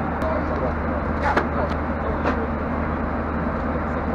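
Airliner cabin noise in flight: a steady rumble of engines and airflow with a low hum, with faint voices of other passengers in the background.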